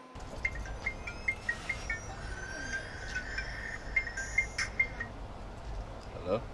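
Quiet outdoor ambience: a low steady hum with short, repeated high chirps and a light click about four and a half seconds in.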